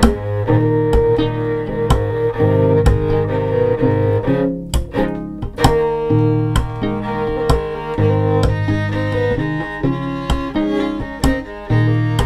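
Instrumental break of a multitracked string arrangement with no voice: a bowed violin holds sustained notes over a low sustained bass line, while a plucked violin marks the beat with short notes.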